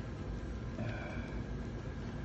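Faint steady outdoor background noise with a low rumble, and a brief faint tone about a second in.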